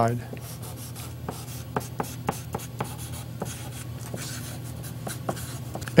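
A stick of chalk writing on black construction paper: a run of short scratchy strokes and sharp taps as block letters are drawn.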